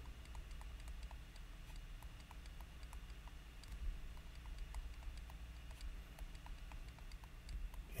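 Faint light clicking, about three clicks a second, over a low steady hum.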